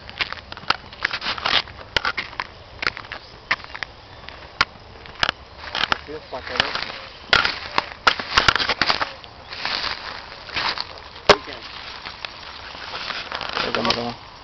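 Footsteps crunching through dry grass, leaves and twigs: irregular sharp crackles and snaps, some closely bunched.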